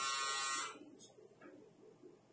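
Cordless electric dog hair clipper buzzing steadily, then stopping suddenly well under a second in.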